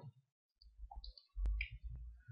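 Two sharp clicks about half a second apart in the second half, the first with a low thump: a computer mouse clicking to advance a presentation slide.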